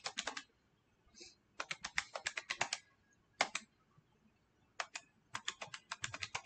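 Calculator keys being pressed in quick runs of clicks with pauses between, as a division is keyed in.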